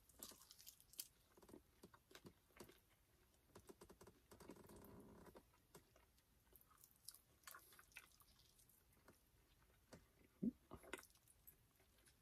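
Quiet close-up chewing and biting on a fried chicken wing: soft wet mouth clicks and smacks, with a louder cluster of bites near the end.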